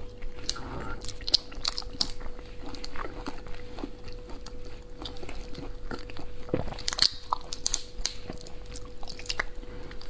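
Shells of large tiger prawns cracking and crackling as they are pulled apart by hand: an irregular run of sharp clicks and snaps, loudest about seven seconds in.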